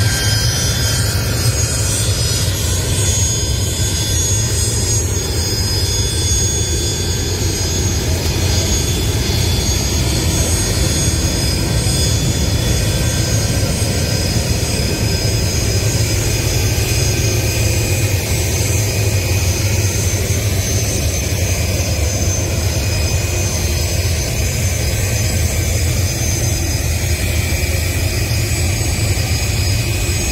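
Jet engines of a Sukhoi Su-25 attack aircraft running as it taxis: a steady loud rumble with a high, even whine over it.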